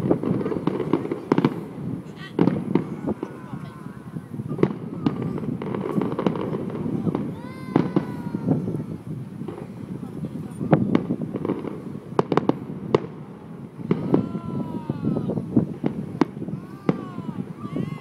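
Aerial fireworks display: shells bursting in a rapid, irregular series of sharp bangs and crackles.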